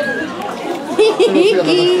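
Several people's voices overlapping in excited chatter, higher-pitched and louder from about a second in, as friends greet each other.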